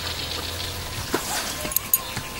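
Quiet outdoor background with a low hum, broken by a few small clicks and knocks about a second in and again near the end.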